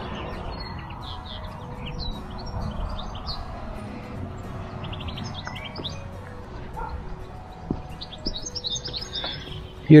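Small birds chirping and calling outdoors, many short high notes scattered throughout, over a low steady background rumble.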